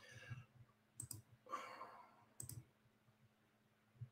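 Near silence with a few faint clicks and a soft breath, as of a person at a computer between sentences.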